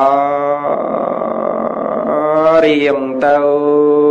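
A Buddhist monk's male voice chanting in long drawn-out held notes. The note changes about two seconds in, and a second long note begins about a second later.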